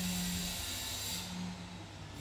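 A steady hiss over a low steady hum, the high part of the hiss dropping away a little past the middle.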